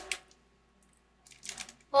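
Brief crinkly crackling from a crunchy keto snack bar and its foil wrapper being handled as a piece is broken off and eaten, in two short bursts: one right at the start and one a little past halfway.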